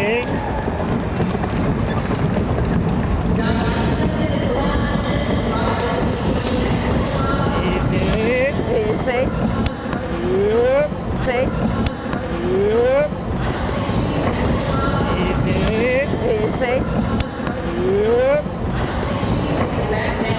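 Hoofbeats of a pair of Percheron draft horses pulling a wagon on arena dirt, over a steady crowd din. From about eight seconds in, short rising voice calls come every second or two.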